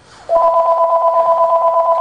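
Telephone ringing: a single ring of two steady tones with a fast warble, starting a moment in and lasting about two seconds.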